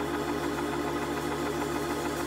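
Church organ holding a steady sustained chord.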